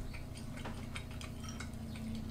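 Soft, irregular small clicks of eating with chopsticks: the tips tapping against the bowls and dumplings, with chewing. Underneath runs a steady low hum.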